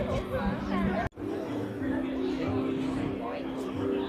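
Indistinct chatter of voices with music in the background, including steady held tones; the sound cuts out briefly about a second in.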